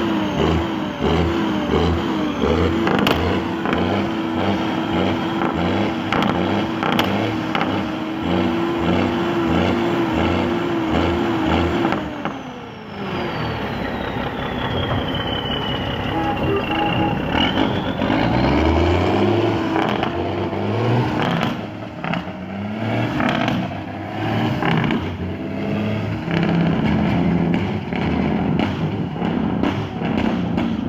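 Cummins N14 diesel engine of a Ford 9000 dump truck held at high revs for about twelve seconds, then dropping off with a high whine that falls away over several seconds. The truck then pulls off, the engine repeatedly revving up and falling back as the manual gearbox is shifted.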